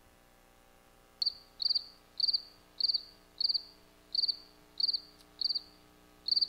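Cricket chirping, the comic 'crickets' effect for an awkward silence: after about a second of quiet, eight short trilled chirps, one roughly every 0.6 seconds.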